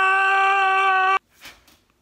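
Jump-scare sound effect: one loud, steady, high-pitched tone that cuts off abruptly about a second in.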